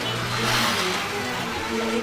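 A road vehicle passing, its noise swelling about half a second in and fading away, over background music with long held notes.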